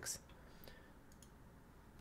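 Near silence with a few faint computer mouse clicks.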